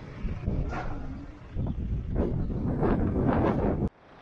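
Tractor engine running under gusty wind buffeting the microphone while the loader lowers the auger; the sound cuts off suddenly near the end.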